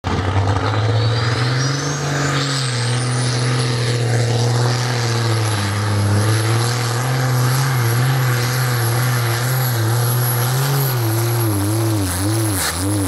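Heavy diesel pulling truck running under full load as it drags a weight-transfer sled, with a high turbo whistle that climbs over the first three seconds and then holds. Near the end the engine note wavers up and down in pitch.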